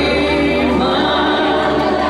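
Loud amplified live music: a singer holds long sung notes over the backing track.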